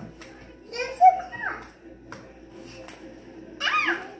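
A young child's high-pitched voice in two short outbursts, one about a second in and another near the end, with a few light knocks between.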